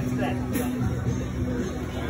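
Bar music with a steady beat under the chatter of a street crowd.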